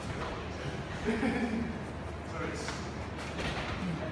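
Indistinct voices echoing in a large training hall, with shuffling and a soft thud as two grapplers drop onto foam mats.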